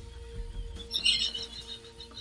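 A small bird chirping briefly, high and faint, about a second in, over a steady low hum.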